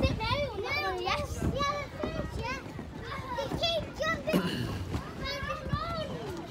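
Young children's high-pitched voices, talking and calling out almost without pause.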